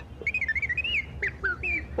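R2-D2's electronic beeps and whistles: a quick run of warbling chirps that rise and fall in pitch.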